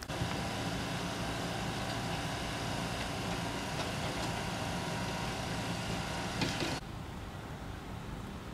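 A rally car engine idling steadily, with a brief knock near the end; the sound cuts off suddenly about seven seconds in.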